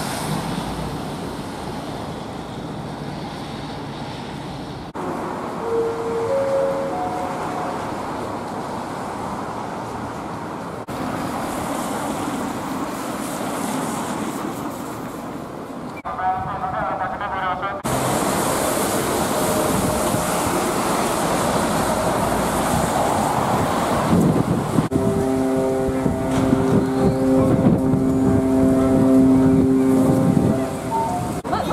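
Town street sound with road traffic passing on wet roads, in several short stretches that change abruptly. In the last few seconds a steady pitched hum with overtones joins the traffic noise.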